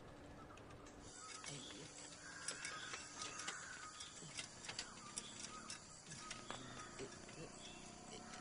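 Faint, scattered small clicks and ticks of a bicycle chain being worked onto its chainring by hand, over a quiet outdoor background.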